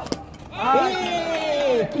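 A single sharp knock as the ball hits the stumps and bowls the batsman, followed from about half a second in by a man's loud, drawn-out shout.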